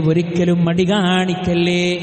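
A man's voice reciting Quranic verse in a melodic chant, holding long drawn-out notes with a slowly wavering pitch.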